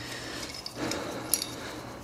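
Light metallic clinking and rubbing as a chrome-plated steel truck part and its bolts are handled in gloved hands, with one sharper clink a little past halfway.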